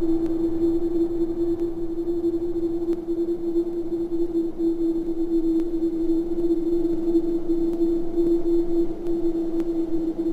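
A single steady, nearly pure tone held unbroken, a sustained drone in the soundtrack score.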